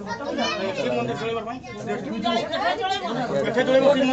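Several people talking over one another: indistinct chatter of a small gathering.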